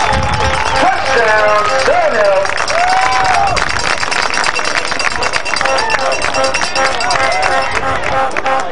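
Football crowd in the stands: voices calling and shouting over one another in the first half, then fast, dense clapping through the second half.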